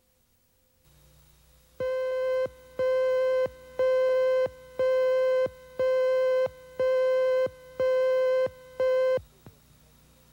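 Videotape slate beeps: eight steady, buzzy beeps of one mid-pitched tone, about one a second, each lasting most of a second, over a faint low tape hum. They stop about a second before the end.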